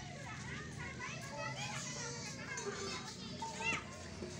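Several children's voices chattering and calling out at once, overlapping, with a short high-pitched call near the end.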